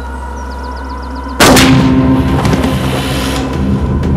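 A low steady drone, then about a second and a half in a single loud handgun shot with a long booming tail.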